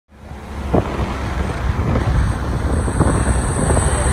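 Low, steady road rumble of a car being driven, heard from inside the car, with wind buffeting on the microphone. It fades in at the very start, and a couple of light knocks sound through it.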